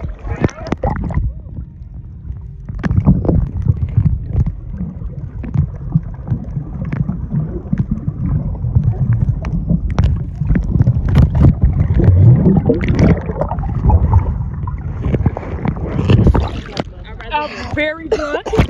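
Muffled underwater sound picked up by a camera held below the surface while snorkelling: a dense low rumbling churn of moving water, broken by scattered clicks and knocks. Near the end the camera comes up out of the water and voices break through.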